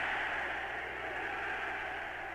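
A steady hiss of noise on the performance soundtrack, easing slightly, in the gap between lines of a shouted German speech recording.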